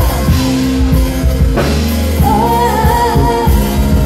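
A woman singing into a microphone over music with drums and bass. A note slides down at the start, and in the second half she holds one long high note with vibrato.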